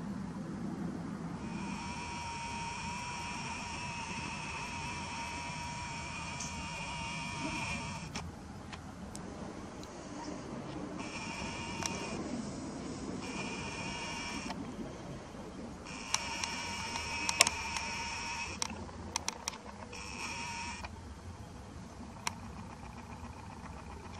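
Nikon Coolpix P900's lens zoom motor whining in stretches: one long run of several seconds, then a few shorter bursts. Several sharp clicks come near the end.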